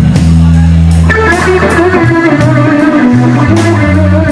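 A blues band playing live: electric bass holding low notes, with an electric guitar line coming in about a second in, over regular cymbal strokes.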